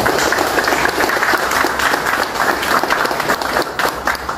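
Audience applause: many people clapping at once.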